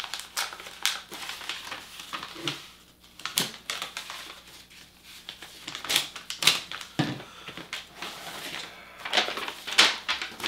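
Paper rustling and crinkling in irregular bursts as a folded note is handled and opened out, louder about six seconds in and again near the end.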